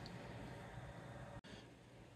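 Near silence: faint steady room hiss with no distinct sound, dropping out for an instant about one and a half seconds in and continuing slightly quieter after.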